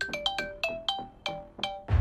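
Mobile phone ringtone playing a quick melody of bright, chiming notes that each ring briefly. Near the end a loud, deep booming hit comes in.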